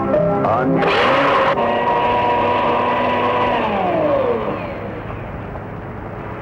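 Electric kitchen blender switched on: the motor's pitch climbs, there is a loud rush for about half a second, and then it runs with a steady whine. About three and a half seconds in the pitch slides down as the motor winds down after being switched off.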